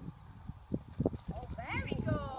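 A horse's hooves thudding on grass turf at a canter, growing louder as it approaches. A person calls out briefly near the end.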